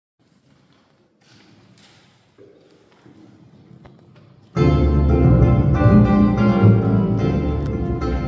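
Faint room sound for the first few seconds, then about four and a half seconds in a small acoustic ensemble of violins, acoustic guitar and double bass comes in loud, playing a bossa nova tune with a strong bass line.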